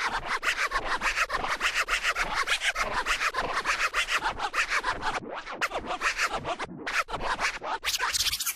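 Rapid DJ scratching, a fast run of short scratch strokes several times a second, with a few brief breaks near the end.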